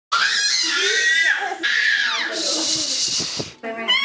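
A baby's loud, high-pitched squeals, sliding up and down in pitch, turning harsher and more shrill in the second half and cutting off about half a second before the end.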